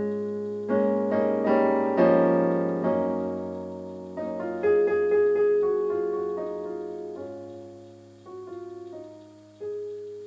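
Background piano music: slow, gentle notes and chords struck every second or so and left to ring and fade.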